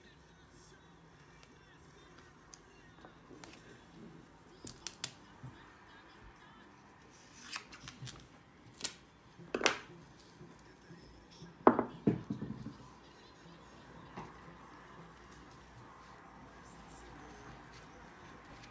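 Adhesive tape being handled, pulled off a roll and cut at a table: a scatter of short, sharp crackling snaps, the loudest about ten and twelve seconds in, with soft rustling between.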